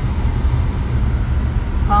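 Car driving slowly along a smooth, newly paved road, heard from inside the cabin: a steady low rumble of engine and tyres.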